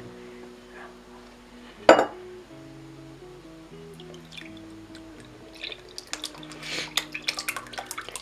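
Homemade persimmon vinegar poured from a glass jar through a cloth-lined strainer, the thick liquid splashing and dripping into the cloth. The splashing becomes audible about six seconds in. Soft background music with sustained notes plays throughout, and a single sharp knock comes about two seconds in.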